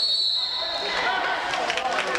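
Referee's whistle blown once: one short, steady, shrill blast lasting under a second, which stops play. Voices from the gym crowd follow.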